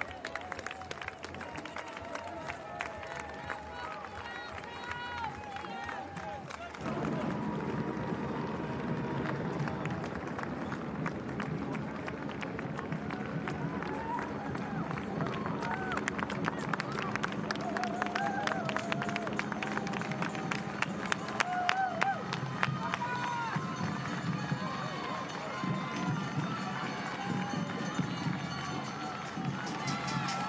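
A pack of marathon runners' footsteps on the road, with roadside spectators shouting and cheering; the sound gets louder about seven seconds in and stays louder.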